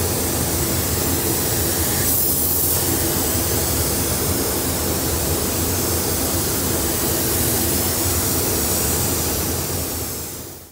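Steady rushing hiss of a compressed-air paint spray gun laying on a colour coat, over the continuous air flow of a paint spray booth, with a brief sharper hiss about two seconds in.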